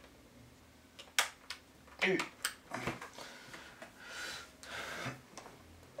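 Cables being handled on a tabletop: a few sharp clicks and some soft rustling.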